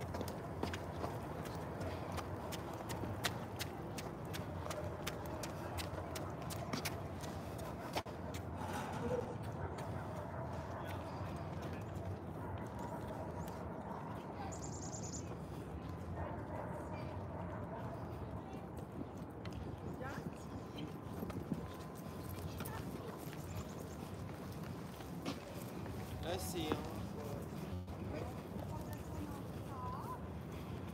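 Footsteps of someone walking on a paved path, over steady outdoor city background noise with faint distant voices.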